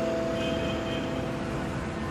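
Street traffic with black cabs driving past close by: a steady rush of engine and tyre noise. A held note of mallet-percussion music fades out under it.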